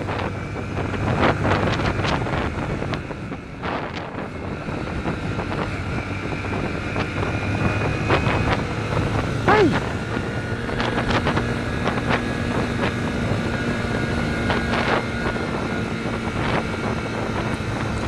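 Yamaha 150cc motorcycle engine running steadily at road speed, heard from the bike with wind noise on the microphone; a steadier, higher engine tone comes in about ten seconds in. A short falling tone sounds just before that.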